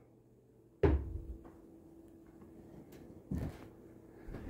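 Two dull thumps, one about a second in that fades out over a second and a shorter one near the end, with a faint steady hum between them.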